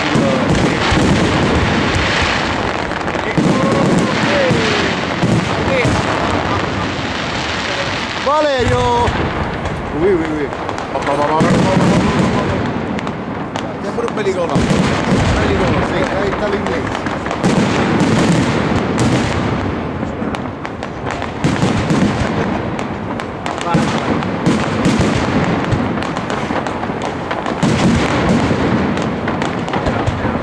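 Professional aerial fireworks display: a continuous, dense run of shell bursts and sharp reports, one after another without a break.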